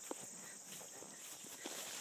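Steady high-pitched chorus of insects such as crickets, with a few faint soft thuds of a horse's hooves walking on grass.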